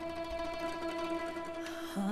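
A mandolin and classical guitar orchestra plays a quiet, steady held chord that fades gently after a loud choral passage.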